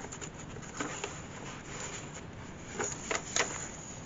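Paper pages of a handmade journal turned by hand: soft rustling with a few light taps, the sharpest near the end.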